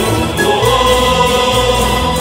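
A Spanish student tuna, a male chorus singing to strummed guitars and bandurrias, holding one long sung note from about half a second in.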